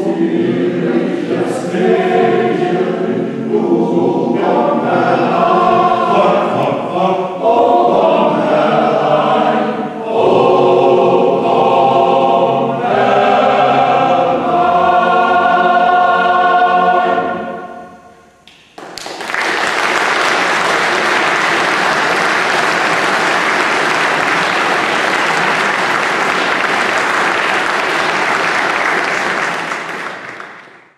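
Mixed choir of men's and women's voices singing in chords. The closing chord dies away about 18 seconds in. After a second's pause the audience breaks into steady applause.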